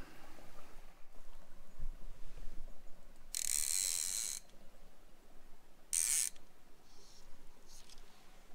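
Fly reel's click-and-pawl ratchet buzzing as line is pulled off it. There is one burst of about a second, a shorter one about two seconds later, and two faint short pulls near the end.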